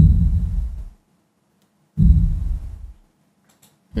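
Cinematic sub impact sound effect, a 'Sub Impact Short Hard Distant' hit, playing back: two very low, deep hits about two seconds apart, each fading out within about a second.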